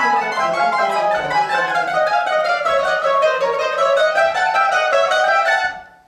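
A mandolin and guitar ensemble playing a rhythmic passage together in fast repeated picked notes, cutting off together just before the end.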